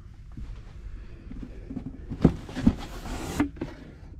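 Rummaging through a storage box of packaged toy cars: low handling noise with two light knocks a little over two seconds in, then a brief rustle.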